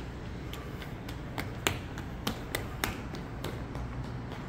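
Footsteps clicking on a hard polished concrete floor: a string of sharp clicks, about two to three a second at uneven spacing, over a steady low hum.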